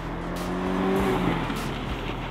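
Mazda MX-5 Miata's four-cylinder engine running at steady revs as the car drives the course. Its note rises a little, holds, and eases off toward the end.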